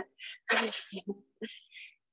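A person's breathy vocal noises: a short hissy burst about half a second in, followed by a few brief, faint murmured fragments and soft exhalations.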